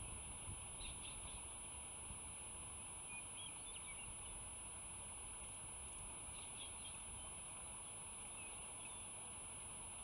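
Faint wild bird calls: a few short, scattered chirps over a steady low outdoor rumble, with a thin steady high whine.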